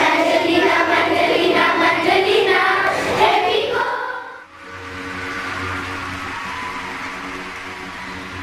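A roomful of schoolgirls singing together for about the first four seconds. The singing fades out, and a soft background music track with long held notes follows.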